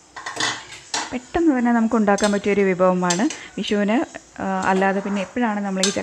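Metal clinks and clatter from an opened aluminium pressure cooker as it is handled, with a sharp clink near the end. A woman's voice runs through most of it.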